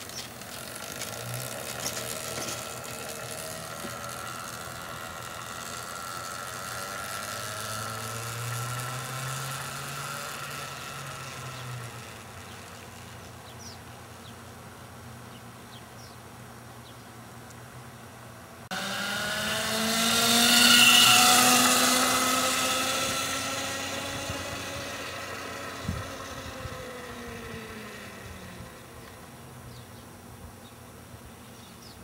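Chain-and-sprocket whine of a homemade electric bobber motorcycle, direct-driven by an 8 hp electric motor with no transmission, as it pulls away and fades into the distance. Past the middle the sound comes back abruptly louder, peaks as the bike passes and fades away again, with falling pitch, and there is one sharp click near the end.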